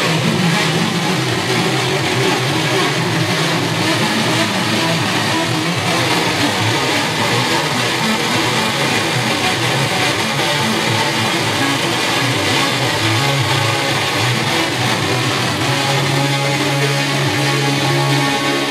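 Electric guitar played live over an electronic backing, dense and steady in level. A sustained low note comes in about three quarters of the way through.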